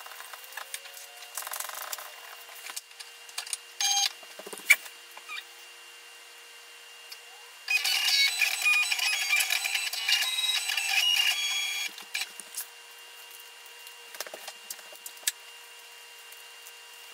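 Silhouette Cameo cutting plotter's motors whirring in a steady run for about four seconds, moving the sheet loaded in it. Before that come sheet handling and a single sharp click.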